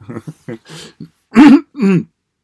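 A man clearing his throat several times in short bursts, the loudest near the middle and end, from a choked, tight throat.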